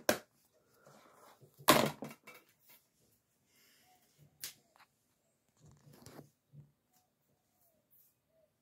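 A few scattered sharp clicks and knocks, the loudest about two seconds in, from handling at a DVD player whose disc tray has just shut on a loading disc.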